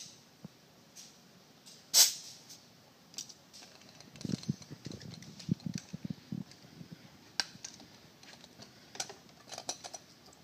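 Handling noise at an outboard's powerhead between compression readings: one sharp click about two seconds in, then scattered light clicks and soft knocks as hands work among the spark plug leads. The engine is not cranking.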